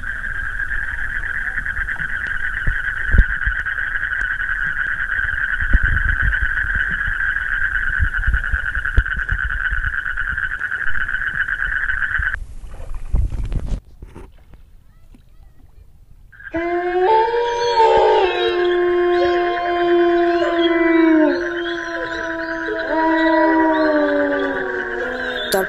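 Horror-film sound design: a steady high droning hiss with scattered low thuds beneath it, cutting off abruptly about 14 seconds in. After two seconds of near quiet, an eerie layered howling of several held, slowly sliding pitches sets in.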